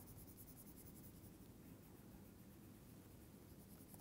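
Near silence with the faint scratching of a stylus drawing on a tablet.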